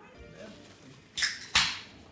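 A short rustle a little over a second in, then a single sharp knock that dies away quickly.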